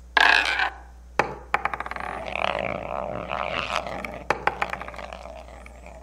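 Sound effects of an animated logo sequence, with toppled dominoes and a rolling ball on screen. A sharp clack comes first, then a run of small clicks and clatter over a rolling rumble that fades away near the end.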